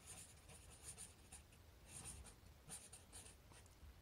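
Faint strokes of a marker pen writing words, a quick series of short scratchy strokes.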